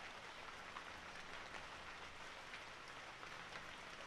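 Gentle rain falling, faint and steady.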